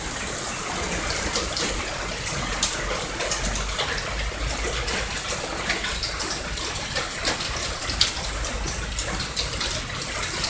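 Heavy rain pouring down in a steady hiss, with many sharp spatters of drops and runoff splashing close by.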